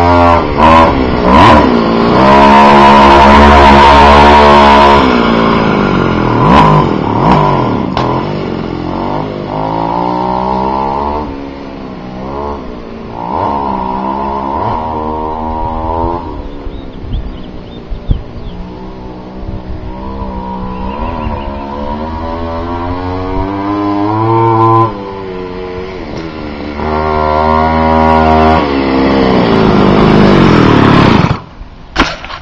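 Go-Ped X-ped scooter's ported 23cc LH two-stroke engine revving up and down as the scooter is ridden around. It is loudest a few seconds in and again near the end, and fainter in the middle as the scooter moves away.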